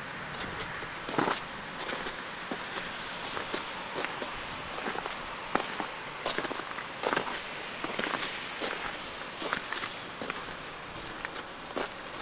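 Footsteps crunching through deep, sleet-crusted snow at a walking pace, about one crunch every three-quarters of a second, over a steady hiss.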